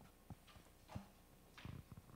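Near silence with a few faint, scattered knocks and shuffles, the last of them bunched together near the end.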